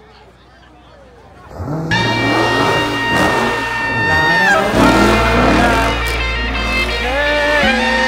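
A car doing a burnout in a pit, its tyres squealing with a steady high squeal over the engine's low rumble. The noise starts suddenly after a quieter second and a half, and the squeal dips in pitch about halfway through.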